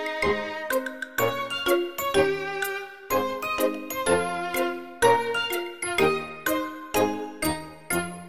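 Background music: a bright, chiming melody of struck notes, a few to the second, each ringing and dying away.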